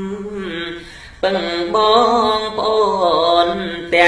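Khmer smot, Buddhist verse chanted by a man's voice in long, wavering melismatic phrases over a steady low drone; the voice drops away briefly about a second in, then comes back louder.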